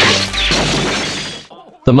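Kung fu film fight soundtrack: a loud crash at the start that trails off over about a second and a half, over a low steady music drone. A narrator's synthesized voice begins just before the end.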